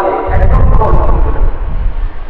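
A man's voice through a microphone and PA, with a loud low rumble that sets in about a quarter second in and lasts to the end.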